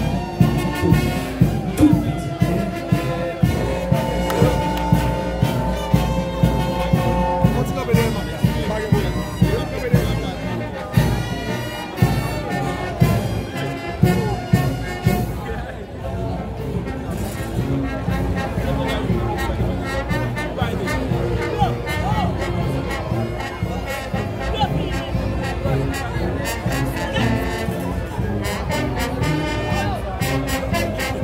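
Brass band music with a drum beat about twice a second and held horn notes, over crowd noise; the beat fades about halfway through, leaving a denser mix of music and crowd.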